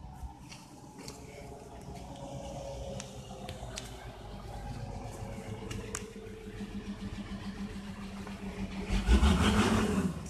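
A passing truck: a low engine drone with a slowly falling note, growing louder over the seconds, then a loud rumbling rush about nine seconds in, the loudest moment.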